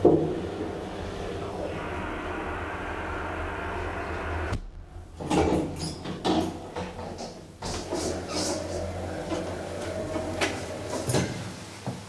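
A DEVE hydraulic elevator running with a steady mechanical hum that cuts off abruptly about four and a half seconds in as the car stops. A string of clunks and knocks from the elevator's mechanism follows.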